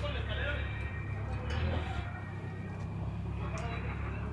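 Street background: a steady low rumble with faint voices of people nearby.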